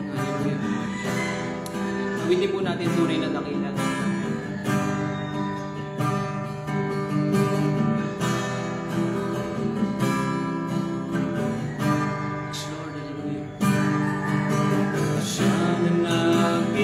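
Acoustic guitar strummed in a steady rhythm of chords, with a man singing along at times.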